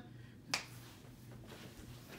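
A single sharp click about half a second in, over quiet room tone.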